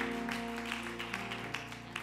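Soft held chords from a church musician's instrument, with scattered hand claps from the congregation in praise, gradually fading.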